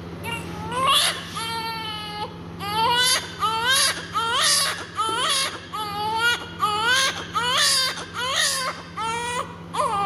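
A newborn baby, minutes after birth, crying: one longer cry early on, then a steady run of short cries, about one to two a second. A faint steady low hum runs underneath.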